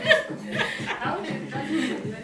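Women chuckling and laughing softly, with a few murmured voice sounds.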